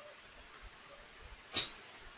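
A single brief, sharp noise close to the microphone about one and a half seconds in, dying away quickly over a faint steady hiss.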